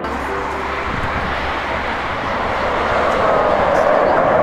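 RAAF F/A-18 Hornet fighter jet's twin turbofan engines, a dense jet rumble growing steadily louder as the jet closes in overhead.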